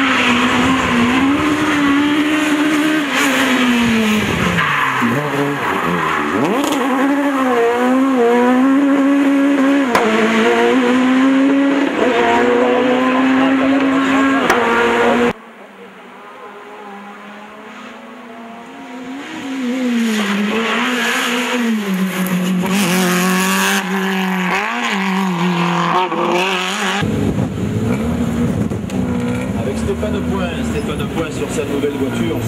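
Rally car engine revving hard at a stage start, its pitch swinging up and down and dipping briefly about four seconds in. After a sudden cut, a rally car is heard coming through a bend on the stage, its engine rising and falling as it accelerates and shifts gear.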